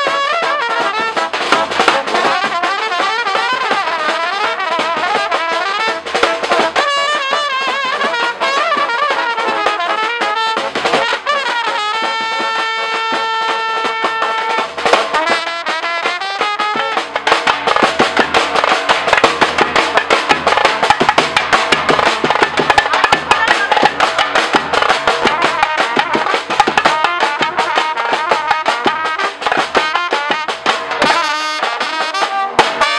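Balkan brass band playing live: trumpets carry a wavering, ornamented melody over snare drum and cymbal. About twelve seconds in the horns hold one long chord for a couple of seconds, and from about halfway the drumming gets denser and louder.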